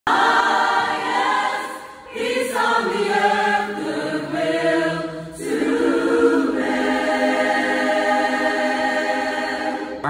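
Large church choir singing a worship song in harmony, in long held phrases with short breaks about two seconds in and again past the five-second mark, the last chord sustained to the end.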